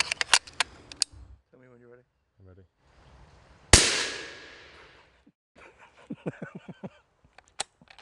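A single rifle shot about three-quarters of the way into the first half: one sharp crack that rings away over about a second, as a ballistic-tip bullet strikes a watermelon in hay. A few short clicks come before and after the shot.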